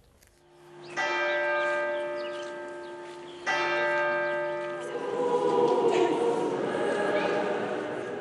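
A large church bell struck twice, about two and a half seconds apart, each stroke ringing on and fading slowly. From about halfway through, a choir singing joins in.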